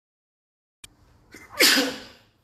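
A man sneezes once, loudly, near the end, after nearly a second of total silence. It is a sneeze he calls unusual and puts down to perhaps a slight cold.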